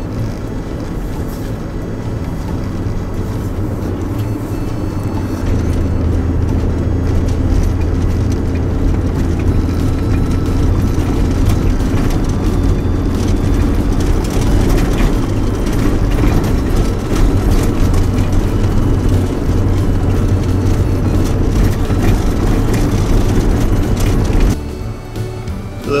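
Four-wheel drive heard from inside the cab on a rough dirt track: steady engine and tyre rumble with frequent knocks and rattles from the bumps. The noise drops away sharply near the end.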